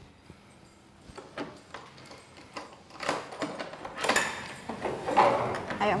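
Metallic clanks and rattles of a barred prison-cell door being handled and opened, getting busier and louder in the second half.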